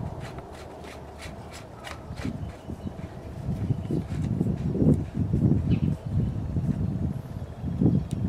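Plastic threaded hose adapter being screwed tight onto a sump pump's plastic outlet elbow: irregular scraping and rubbing of plastic on plastic with small handling knocks, busier from about two seconds in.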